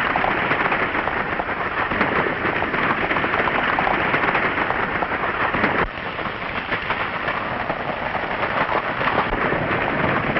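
Galloping hooves and a rattling wagon of a runaway horse team make a dense, continuous clatter. The level drops suddenly about six seconds in and the clatter goes on a little quieter.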